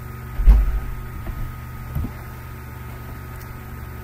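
A dull low thump about half a second in, then two fainter knocks, over a steady electrical hum.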